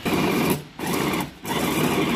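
Electric food chopper's motor running in three short bursts, grinding pork belly and dried tiny shrimp.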